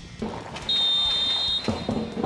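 Referee's whistle: one steady, high, shrill blast lasting about a second, signalling that the penalty kick may be taken. A run of regular knocks starts right after it.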